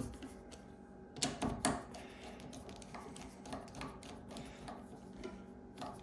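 Hand screwdriver turning the X-rail mounting bolts of a CNC rail mount: faint scattered clicks and small metal taps, with two sharper clicks about a second and a half in, over a faint steady hum.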